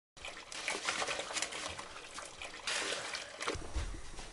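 Kitchen tap running into the sink, with uneven splashing and slopping of water and mud as the sink is being clogged.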